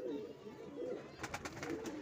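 Domestic pigeons cooing faintly in a low, wavering murmur, with a few soft clicks about a second in.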